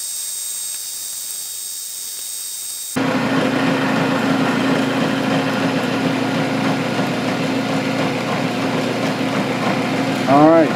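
Benchtop milling machine cutting a quarter-inch slot in a block of aluminum with an end mill. For the first three seconds it is a high hiss with a thin steady whine. About three seconds in, it changes abruptly to a louder, steady motor hum with cutting noise over it.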